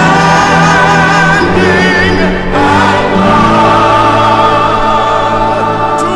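Mixed choir singing with a string orchestra, holding long sustained chords; the harmony shifts to new held notes about two and a half seconds in.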